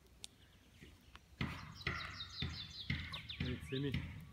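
A small songbird singing a rapid run of high, slightly falling notes, about eight in a second, starting about two seconds in, over close knocks and rustling.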